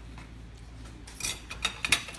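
A few short, sharp crackles and clicks from food and utensils being handled, starting a little over a second in.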